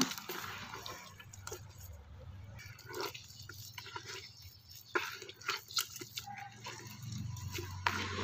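A hand squeezing and kneading a wet mash of banana peels and oilcake in a plastic bucket: soft, irregular squelches and clicks, a few more distinct around the middle.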